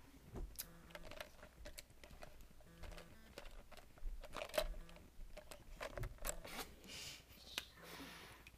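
Faint rustling of paper with scattered small clicks and knocks as a book and other objects are handled on a tabletop, with a brief burst of rustling near the end.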